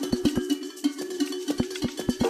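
Electronic dance music from a DJ set in a stripped-back passage: a quick run of short, pitched, cowbell-like percussion hits over light high ticks, with no kick drum or bass.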